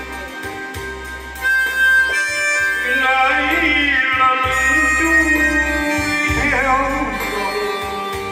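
Live music from a Yamaha electronic keyboard: a steady stepping bass line under held, reedy melody notes. A man sings over it through a microphone in long, wavering notes.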